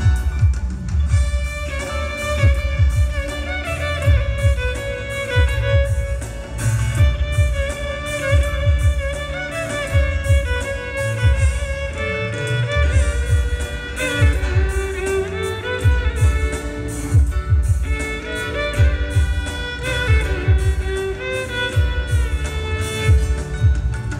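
A live band playing, with a violin carrying a gliding melody over a steady bass and drum beat, amplified through the hall's PA.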